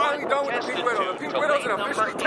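Men talking excitedly, close to the microphone: speech only.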